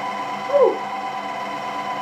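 Electric chocolate fountain's motor running with a steady hum of several even tones. About half a second in, a brief falling voice sound cuts across it.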